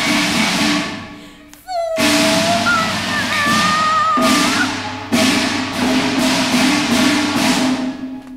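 Cantonese opera instrumental music: the percussion section strikes three loud crashes, about two, four and five seconds in, each ringing on under a gliding melodic line.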